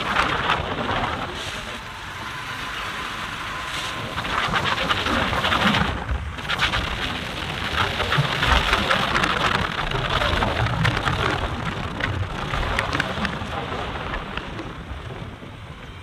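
Wind buffeting the microphone on a moving motorcycle, a loud rushing noise with road noise underneath.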